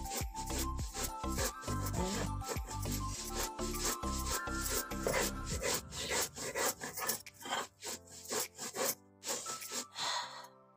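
Stone muller rubbed back and forth on a flat stone grinding slab (sil), grinding coarse salt with fresh coriander, garlic and spices into a paste: a steady run of gritty scraping strokes, thinning out near the end.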